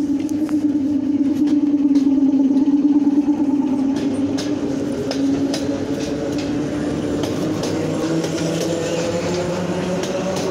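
Eight-car ER9M electric multiple unit moving along the platform. It has a steady electrical hum and a motor whine that slowly rises in pitch as it gathers speed, with scattered clicks of wheels over rail joints.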